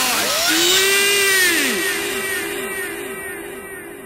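The end of an electronic dance track: the beat stops and a synth tone with repeating rise-and-fall pitch sweeps echoes on, fading out steadily.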